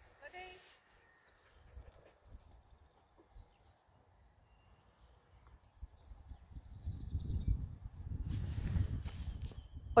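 A brief faint voice at the start, then a stretch of near quiet. About six seconds in, an uneven low rumble builds and holds, like wind buffeting the microphone.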